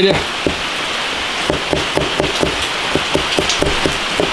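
Cleaver slicing pickled vegetables on a plastic cutting board: quick even knocks of the blade striking the board, about four to five a second, after a short pause near the start.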